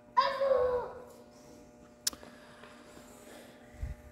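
A short, high voice sound with a slight fall in pitch, lasting under a second, followed by a single sharp click about halfway through and a soft low thud near the end.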